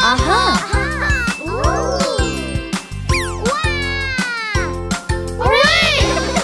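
Channel outro jingle: bouncy children's music with a bass beat and sliding, cartoonish voice-like whoops, with a quick falling sweep about three seconds in.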